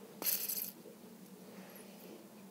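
A short click and scrape from a rusted fidget spinner being handled, about a quarter second in, then quiet room tone.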